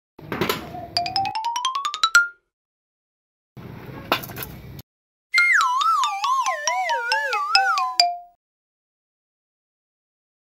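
Cartoon comedy sound effects: first a rising whistle-like tone with clicks that come faster and faster, then a short noisy whoosh about four seconds in, then a wobbling, falling whistle-like tone that ends abruptly about eight seconds in.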